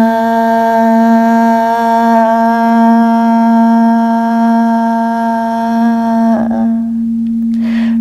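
Quartz crystal singing bowl sounding one steady, continuous tone as a mallet is circled around its rim. A woman tones one long sung 'ah' over it, which slides down and stops about six and a half seconds in, leaving the bowl ringing alone.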